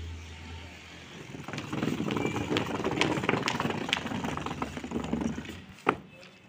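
Cloth rustling and crackling as a bedsheet and pillow are spread and smoothed over a charpai, a wooden rope-strung bed. It is busiest in the middle, and there is a single sharp click just before the end.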